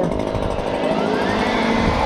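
Handheld two-stroke gas leaf blower running steadily.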